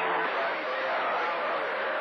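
Static from a CB radio receiving a skip signal on channel 28: a steady hiss with a faint voice half-buried in it, while the signal weakens.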